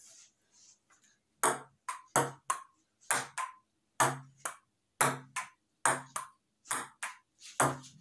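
A rally of table tennis played on a wooden dining table: the ping-pong ball clicks off rubber paddles and bounces on the tabletop. The clicks start about a second and a half in and come mostly in pairs, a hit and a bounce, about one pair a second.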